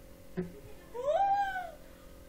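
A single high-pitched call of just under a second, rising and then falling in pitch, preceded by a brief faint sound.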